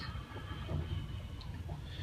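Quiet room background with a low steady hum and no distinct crack or other event.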